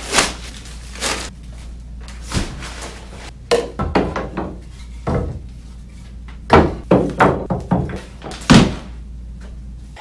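Paper grocery bags rustling and crinkling while bags of substrate and pieces of driftwood are lifted out and set down with thunks on a wooden desk, over a steady low hum. The knocks come at irregular moments, the loudest in the second half.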